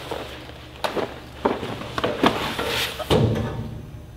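A large print folder being handled in a metal blueprint cabinet, with three sharp clicks and knocks, then the cabinet's lid shutting with a thud about three seconds in.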